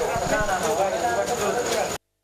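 Indistinct voices of people talking in ambient field sound, with a faint steady high-pitched whine. The sound cuts off abruptly at the end.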